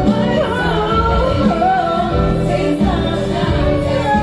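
Live pop song: a woman singing into a microphone over instrumental backing with a steady beat.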